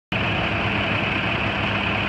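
2013 International 4400's MaxxForce DT diesel engine idling steadily.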